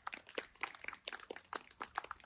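Scattered hand clapping from a small audience: irregular, sharp claps overlapping at several per second.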